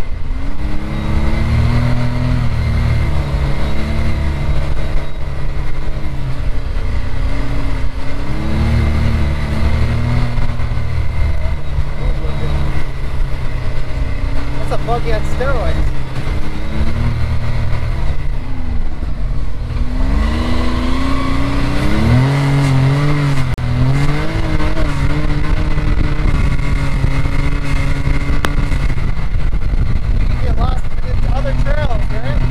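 Can-Am Maverick X3 side-by-side's turbocharged three-cylinder engine, heard from the cockpit while driving, its pitch rising and falling as the throttle comes on and off. It climbs most sharply about twenty seconds in.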